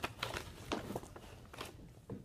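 A husky's muzzle right at the microphone: a handful of short, irregular clicks and rustles.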